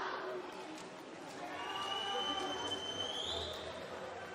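Murmur of many voices echoing in an indoor swimming hall. A thin, steady high-pitched tone comes in about a second and a half in, holds for about two seconds, and rises briefly before it stops.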